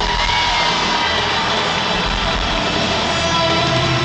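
Live concert music played loud in an arena, heard from the audience, with the crowd cheering over it.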